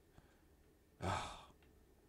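A man's single breathy sigh about a second in, voiced as a hesitant "euh"; the rest is quiet room tone.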